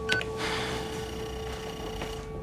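Computer sound effects: a short high electronic beep just after the start, then a soft electronic hiss with faint high tones, over a steady held tone.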